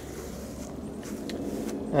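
Faint footsteps on grass, a few soft steps in the second half, over a steady outdoor background hiss.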